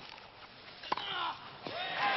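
Tennis ball struck by racquets in a rally: two sharp hits about a second apart, followed by brief crowd voices.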